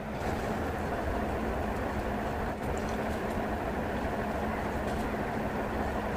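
Steady low rumbling background noise with a faint hiss, unchanging throughout and with no distinct events.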